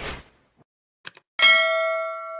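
End-screen sound effects: a rap track's tail fades out, then a quick double mouse click, then a bright bell ding that rings on and slowly fades.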